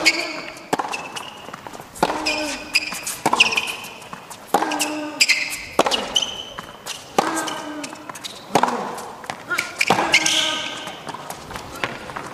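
Tennis rally on an indoor hard court: racquets strike the ball back and forth, a shot about every second and a half. Shoes squeak on the court between the shots.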